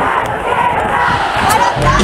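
Large concert crowd screaming and cheering, many high voices shouting over each other; the band's music starts near the end.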